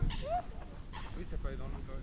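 People's voices talking in the background, with a short rising-then-falling call just after the start.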